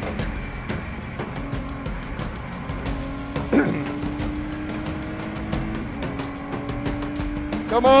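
Race car's Ford V6 engine heard from inside the cockpit, running at high, fairly steady revs. The pitch dips slightly a few times, over loud road and wind noise and small rattles.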